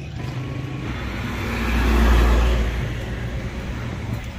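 A road vehicle passing close by on the street, its engine and tyre noise swelling to a peak about two seconds in and then fading.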